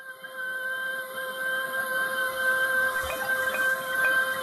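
A steady electronic drone of several held tones over a soft hiss, swelling slowly in loudness: the sustained opening of a synthesized music interlude.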